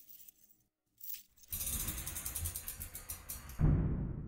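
The song's last notes die away. About a second and a half in, a heavy metal door starts rattling as it rolls for about two seconds, then slams shut with one loud boom that rings out and fades, the sound of a prison cell door closing.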